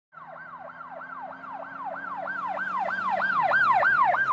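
Police siren in fast yelp mode: a rapid up-and-down wail repeating about three to four times a second, getting steadily louder, over a steady low hum.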